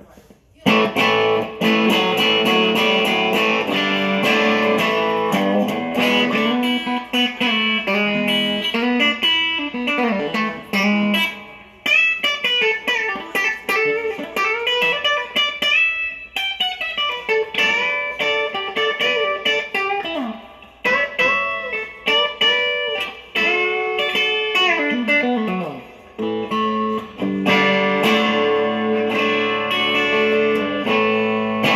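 1965 Gibson Firebird VII electric guitar played on its middle mini-humbucker pickup: chords and single-note lines with string bends, broken by a few short pauses.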